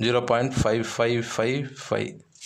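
Pen scratching on paper while writing numbers by hand, under a man's voice.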